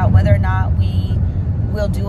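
Steady low rumble of a car cabin on the move, under a woman's speech that pauses for about a second in the middle.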